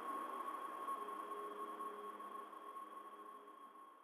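A steady high electronic tone held over hiss, with fainter lower held notes, fading out steadily as the track ends.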